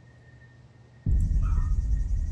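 A quiet second, then a sudden deep, low drone from a movie trailer's soundtrack that sets in about a second in and holds steady.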